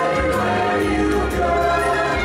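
Choir singing held, hymn-like notes over instrumental accompaniment with a low bass line.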